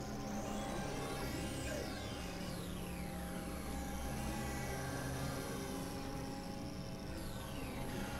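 Experimental electronic synthesizer music: layered steady drones, with low notes that shift every second or two and high tones that slowly sweep up and then down in pitch.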